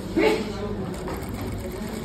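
Industrial lockstitch sewing machine running steadily while stitching a patch pocket onto fabric, with a short louder sound just after the start.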